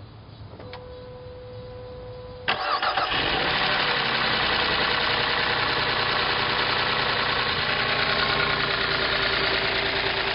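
A click and a steady hum for about two seconds, then the 2005 Chrysler Sebring's engine starts suddenly on its new starter, catching at once, and keeps idling. It idles with a rapid ticking "like a sewing machine", from worn lifters.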